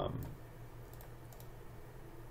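A few faint, scattered clicks of a computer mouse and keyboard over a low steady hum.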